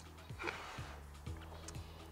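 Soft background music with a low bass line, plus a faint short swish of water, like a hand moving in a tub, about half a second in.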